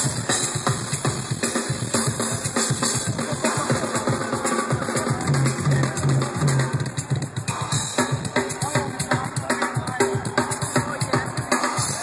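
Live rock drum kit solo: a fast, dense run of hits on snare, toms, bass drum and cymbals, played loud through a festival PA.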